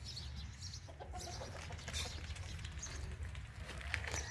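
Chickens clucking in short, scattered calls over a steady low rumble.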